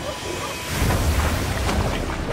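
A scuba diver plunging into the sea: a splash, then a sustained rush of water with a deep low end starting a little under a second in.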